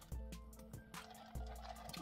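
Quiet background music with sustained notes that change pitch. Under it are faint liquid sounds of a soft drink being sipped through a plastic straw.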